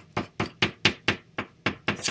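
White pencil flicking quick short strokes onto black paper over a hard table while drawing short hair lines: an even run of sharp taps, about four or five a second.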